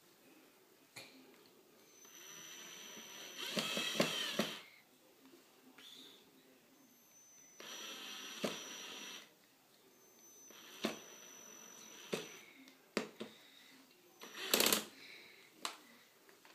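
A 14.4 V cordless drill-driver runs a screw into a particleboard flat-pack panel in three runs of a few seconds each, its motor a steady whine. Between runs there are knocks and clatters from the drill and panel being handled, the loudest near the end.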